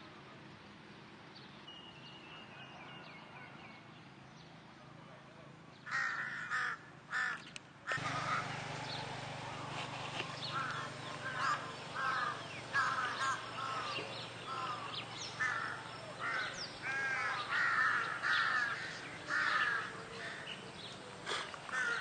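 A flock of crows cawing: many short, harsh calls, some overlapping, starting about six seconds in and carrying on throughout.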